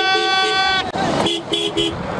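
Vehicle horns honking: a long, steady horn note that stops just under a second in, with short two-note car-horn toots over it, then three quick two-note toots near the end.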